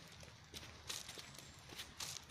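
Footsteps of a person walking on a gravelly dirt road, a short scuff about every half second.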